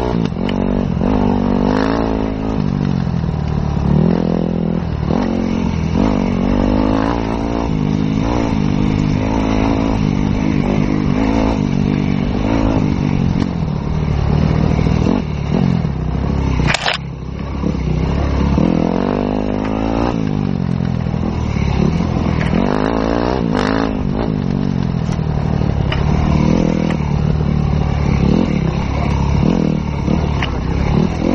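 Enduro motorcycle engine heard close up while riding a dirt trail, its revs rising and falling again and again as the throttle is opened and closed. Two sharp knocks stand out, one a little past halfway and one later on.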